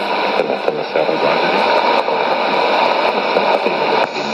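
Shortwave AM broadcast on 15140 kHz heard through a Sony ICF-2001D receiver's speaker, the signal fading so that a steady hiss of static and noise covers the Arabic-language announcer's voice, which is only faintly left.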